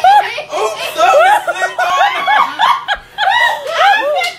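People laughing hard and loudly in rapid, high-pitched bursts, with a short lull about three seconds in.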